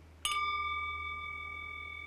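A small metal singing bowl struck once about a quarter second in, ringing on with several clear, steady tones that slowly fade.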